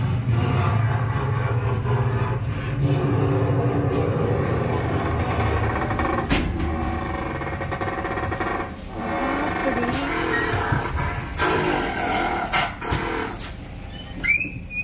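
Ghost-house attraction soundtrack: a loud, steady low rumbling drone with eerie music and several sharp knocks scattered through it, the rumble fading out about halfway.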